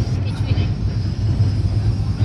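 Steady low rumble of an LHB passenger coach running at speed, heard from inside the coach behind a closed window.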